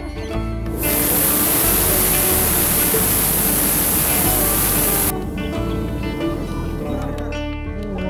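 Hot air balloon's propane burner firing overhead: one loud hissing blast starting about a second in and cutting off suddenly about four seconds later, with background music underneath.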